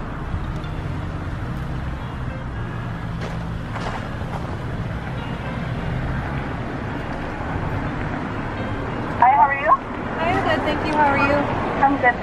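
Car engine idling, a steady low hum, with road traffic faintly behind it; a voice starts about nine seconds in.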